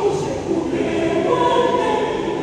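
Mixed-voice church choir singing in harmony, the upper voices coming in louder about three-quarters of a second in.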